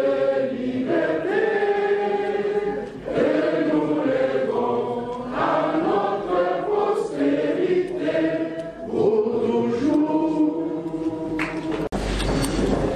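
A group of adults singing together in chorus, in long sustained phrases with short breaks about three and nine seconds in.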